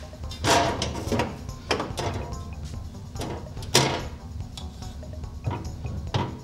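A spirit level set down and slid along a thickness planer's metal outfeed table: a handful of short knocks and scrapes, the sharpest a little under four seconds in.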